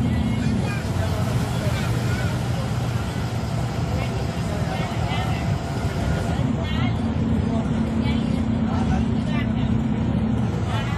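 Ashok Leyland Viking bus's diesel engine running at road speed, with heavy road noise from inside the cabin. Its steady low drone drops away about half a second in and comes back near the end.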